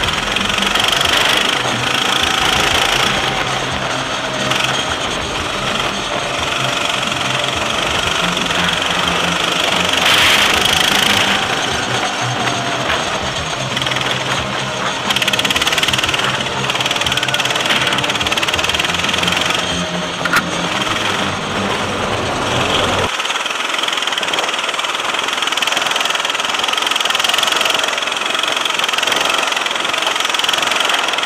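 Go-kart engine running hard on track, its note rising and falling with throttle through the corners, heard from on board over a steady rush of wind and road noise. About 23 seconds in, the deep part of the engine sound suddenly drops away.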